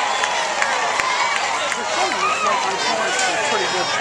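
Stadium crowd of spectators talking and shouting over one another, many voices at once with no single voice standing out.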